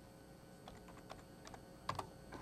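Faint clicks of computer keyboard keys, a few scattered keystrokes over the second half with a sharper, louder click near the end.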